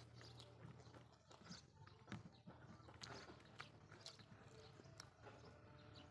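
Faint eating sounds: chewing and wet mouth clicks from someone eating rice and potato curry by hand, irregular sharp clicks over a low steady hum.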